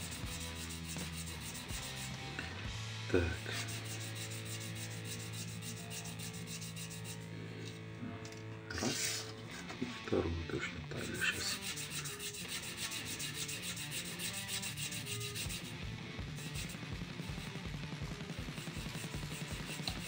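A small steel knife-pivot washer being rubbed back and forth under a fingertip on a flat grey abrasive stone, a steady light scratchy rubbing with a few brief louder scrapes. The washer seems warped, so it is polishing unevenly.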